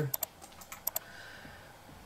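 A handful of quick, sharp computer mouse clicks in the first second, two of them close together like a double-click, then only faint room tone.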